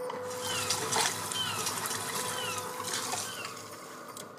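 HF radio receiver tuned to the WWV time-signal broadcast from Fort Collins: a hiss of shortwave static over a faint steady tone, with a couple of faint ticks marking the seconds.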